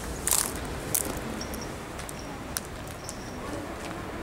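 Footsteps crackling and rustling through dry vegetation and debris, with a loud crackle just after the start and a couple of sharp clicks, over a low steady rumble on the handheld microphone.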